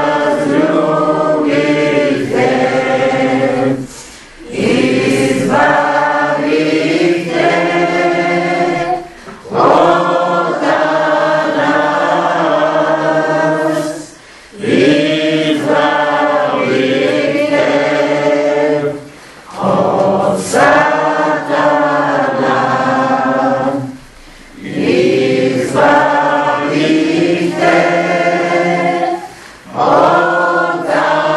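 A group of voices singing a hymn together, in sung phrases of about five seconds, each followed by a short pause for breath.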